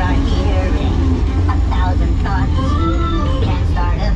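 Dark-ride soundtrack over a steady low rumble: music with held notes, and wordless voice-like sounds through the middle.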